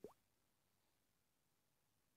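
A single short plop, a quick upward sweep in pitch right at the start, followed by near silence.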